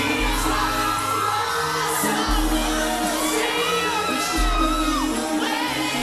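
Live pop song playing loud over a shouting, screaming crowd of fans, with long low bass notes.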